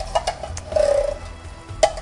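A metal can of undrained diced tomatoes being emptied into a stock pot. The can knocks sharply against the pot at the start and again near the end, with a brief hollow glug in between as the contents slide out.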